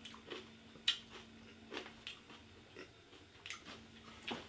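Chewing of crunchy rolled tortilla chips (Takis Fuego): faint, irregular crunches every second or so.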